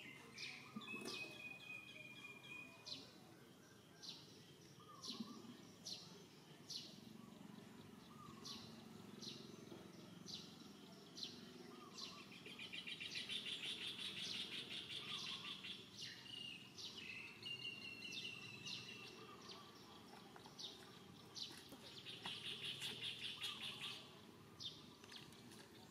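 Birds calling in the trees: a short high chirp repeated about once a second, a few longer thin whistles, and two stretches of fast buzzy trilling, one about halfway through and one near the end, over steady low background noise.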